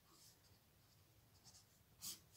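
Near silence, with faint scratching of a felt-tip marker writing on paper.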